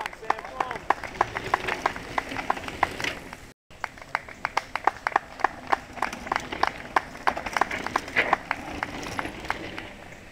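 Trackside spectators clapping in a quick, fairly steady rhythm of about four claps a second, with indistinct voices underneath. The sound cuts out for a split second a few seconds in.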